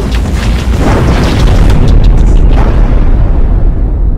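A loud explosion-like boom sound effect: a deep, sustained rumbling blast with a hissing rush on top, swelling twice.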